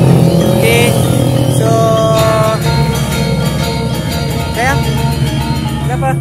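A road vehicle's engine running with a steady low hum that eases off over the first few seconds, with music playing over it.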